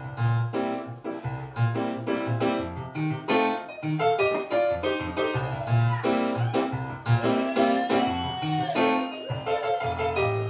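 A live band playing, with keyboard and guitars over drums. It comes in all at once right at the start after a brief lull.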